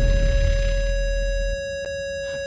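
A single steady electronic tone held in a break of a hip hop track, over a low bass rumble that cuts off about one and a half seconds in, leaving the tone alone.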